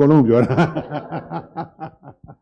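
A man laughing into a handheld microphone: a run of short chuckles that grows fainter toward the end.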